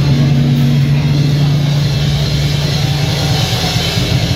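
Heavy metal band playing live through a club PA: distorted guitars and bass hold one low droning note over the drums, loud and steady.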